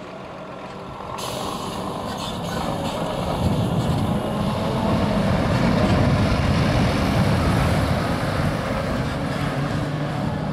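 Scania R480 tractor-trailer's inline-six diesel engine driving past, growing louder to a peak around the middle and easing off toward the end, with tyre noise on the road. A hiss starts suddenly about a second in and dies away over the next few seconds.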